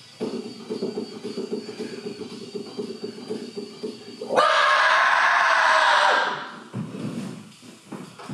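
Synthesizer keyboard playing a rhythmic pattern of short low notes. About four seconds in, a sudden loud, harsh sound cuts in and lasts about two seconds; it is the loudest part and its source can't be told.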